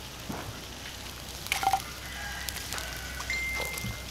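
Scattered light clicks and crackles as grilled tilapia is lifted off a wire grill over hot charcoal embers, over a faint hiss. A thin, steady high tone comes in near the end.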